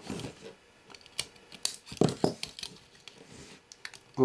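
Diagonal wire cutters snipping through thin wires inside a camcorder, a handful of sharp clicks and snaps with the loudest about two seconds in, among small handling ticks.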